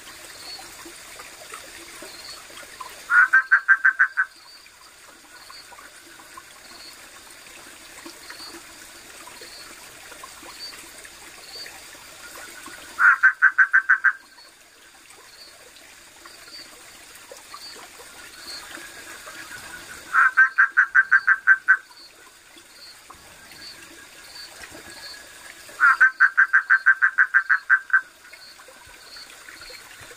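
A frog calling in four loud rattling trains of rapid pulses, each a second or two long, over the steady sound of a stream running. A faint, regular high ticking goes on throughout.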